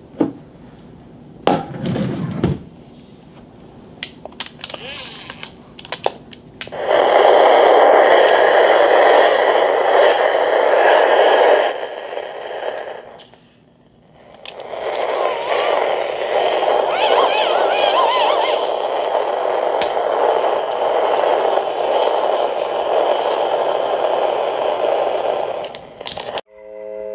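A few handling clicks and knocks, then a portable radio giving out loud static. The static drops out briefly about halfway and comes back with faint wavering voice fragments in the hiss.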